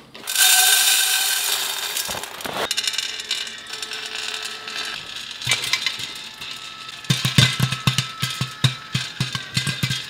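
Dry popcorn kernels rattling into a metal pan in the first couple of seconds. Then popcorn pops under the glass lid of an automatic rotating roll pan, scattered at first and then quick and irregular, with many sharp pops in the last few seconds.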